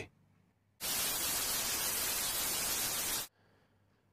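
TV static sound effect: an even hiss about two and a half seconds long that starts abruptly about a second in and cuts off sharply.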